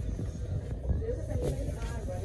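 Faint, indistinct voices in the background over a low steady hum, with a few soft rustles.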